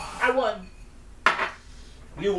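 A short vocal sound, then about a second in a single sharp clink of cutlery against a ceramic bowl.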